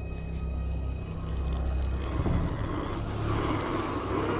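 Horror film soundtrack: a low rumbling drone of steady deep tones, swelling with a rising rush of noise in the second half.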